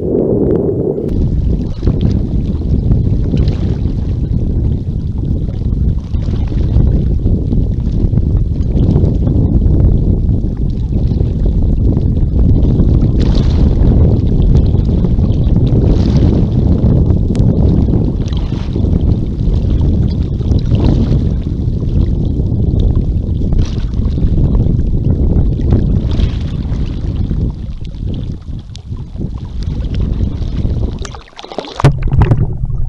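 Seawater splashing and sloshing against a camera held at the surface by a swimmer, over a heavy, steady rumble of wind on the microphone, with occasional louder splashes.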